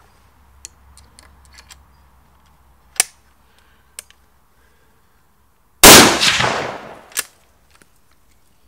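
Light clicks of the scoped rifle being handled. About six seconds in comes one very loud, sudden bang that dies away over about a second, followed by one more sharp click.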